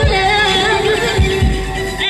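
Female vocalist singing live into a handheld microphone over a recorded backing track, with deep bass hits that drop in pitch about every two-thirds of a second.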